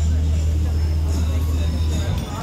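A live band's low bass note held steadily through the stage speakers, with voices over it. The note cuts off just before the end.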